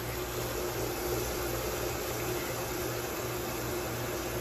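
Tap water running steadily from a kitchen faucet and a spray nozzle into an air fryer basket filling with soapy water in a stainless steel sink, a constant rush of water with a faint steady hum underneath.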